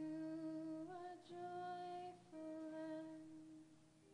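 A woman's voice singing a slow melody in three long held notes, the middle one higher, over a faint low sustained tone; it fades toward the end.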